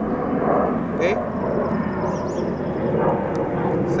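Steady background rumble of distant engine noise that runs on without change, with a single spoken "okay" about a second in.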